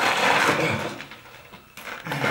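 A man's heavy, breathy groan lasting about a second, fading away in the second half.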